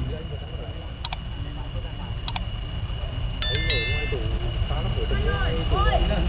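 Night outdoor ambience: steady insect chirring over a low continuous rumble, with two sharp clicks, a brief high metallic ringing about three and a half seconds in, and faint distant voices near the end.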